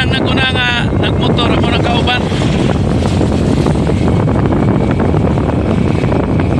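Wind rushing over the microphone together with the steady noise of a vehicle moving along a road, with a voice heard briefly in the first couple of seconds.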